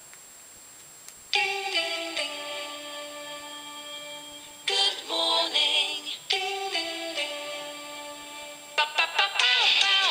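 A smartphone alarm going off with a musical tone: after about a second of quiet, sustained electronic chords begin, a new chord striking every second or two, and the music turns busier with a sung-sounding melody near the end.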